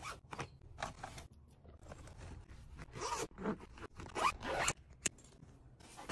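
A zipper on a quilted fabric toiletry bag being pulled in several short rasping strokes, with light clicks from handling the bag.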